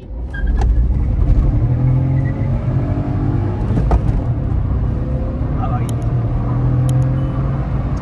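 Cabin noise inside a VW Vento 1.0 TSI on the move: the turbocharged three-cylinder engine's steady low drone under road and tyre noise, holding a fairly constant speed.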